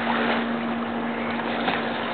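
Steady hiss of water spraying onto a plastic slip-and-slide, with faint splashes as a child slides along the wet sheet. A low steady hum runs underneath.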